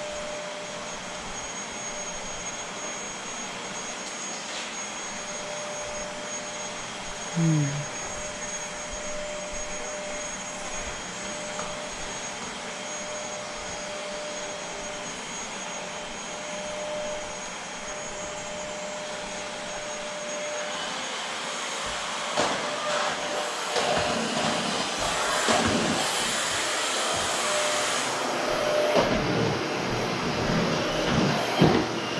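Vacuum cleaner running steadily with a faint whine. A short, louder pitched squeak comes about a quarter of the way in. From about two-thirds through, irregular rattling and knocking starts over the motor noise.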